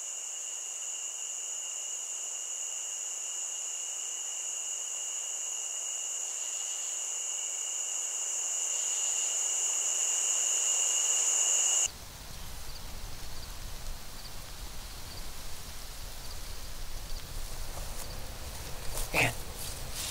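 Insect chorus: a steady high-pitched ringing drone in two pitches, slowly swelling, then cutting off abruptly about twelve seconds in. It gives way to a rougher, lower outdoor background with faint ticks.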